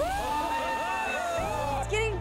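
Several people's voices in one long, drawn-out exclamation: the pitch rises sharply at the start and is held for nearly two seconds before falling away. They are reacting as the pig's stomach swells with gas from the Mentos and Diet Coke.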